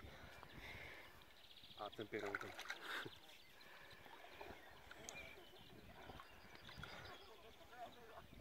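Near silence, with a faint human voice briefly heard about two seconds in.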